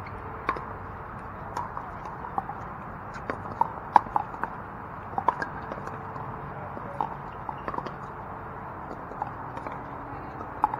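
Pickleball paddles hitting a hollow plastic ball: a run of sharp, ringing pops, quickest and loudest about three to five seconds in, with fainter ones scattered before and after.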